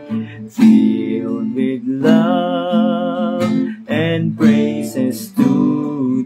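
A man singing a slow song while strumming an acoustic guitar, holding one long note with vibrato from about two seconds in.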